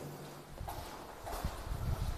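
Soft footsteps on a hard floor, a few irregular low thuds, with faint rustle from a handheld phone being carried as a person walks.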